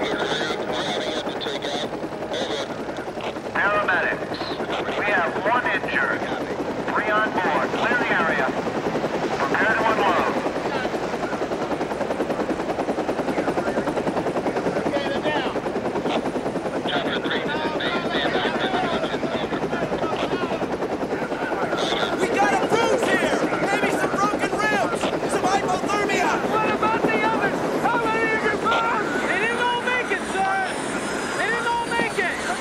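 A helicopter running steadily as it flies low over a river and sets down, with many people calling and shouting over it, the voices busier near the end.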